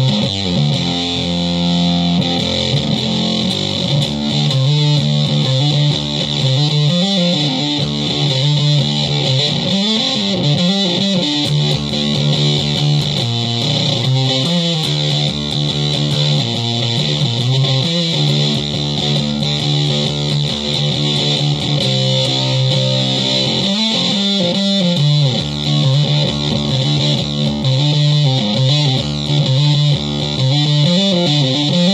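Electric guitar played through a Behringer SF300 Super Fuzz pedal: heavily fuzzed, distorted notes and riffs with long sustain, played continuously.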